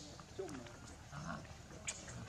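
A macaque calling: one short, falling cry about half a second in, followed by fainter calls and a sharp click near the end.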